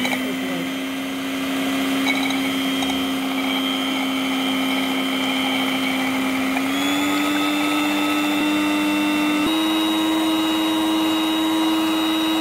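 Electric hand mixer whisking egg whites into foam in a glass bowl: a steady motor whine that steps up in pitch twice, about two-thirds of the way through and again near the end.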